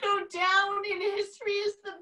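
A woman's voice in a high, drawn-out sing-song, held at nearly one pitch in about three stretches.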